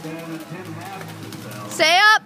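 Faint voices of onlookers, then a loud rising shout or shriek near the end as the two log rollers lose their footing on the spinning log.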